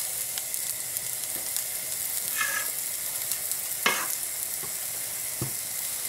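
Pancake batter sizzling in hot oiled non-stick frying pans as it is ladled in, a steady hiss, with two sharp clicks in the second half.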